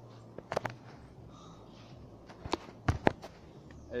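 A few short knocks and scuffs close to the microphone, from the person filming moving about: a pair about half a second in and a few more near the three-second mark, over a faint low hum.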